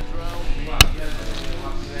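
A single sharp smack or knock a little under a second in, over faint background music.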